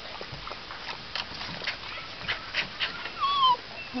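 Brittany puppy lapping water from a plastic bucket: a run of quick, irregular wet laps, with a brief high whimper near the end.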